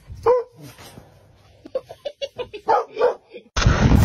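A dog gives a short yip, then a quick run of short barks and yips. Near the end a much louder noise cuts in.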